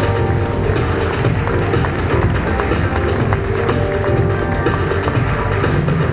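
Music with a steady beat and heavy bass.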